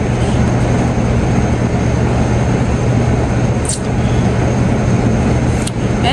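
A steady low droning hum with a hiss over it, like a machine or engine running close by, and two short clicks about two seconds apart in the second half.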